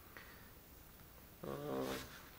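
Near-silent room tone, then about a second and a half in a man's drawn-out voiced hum, held for about half a second, as before speaking.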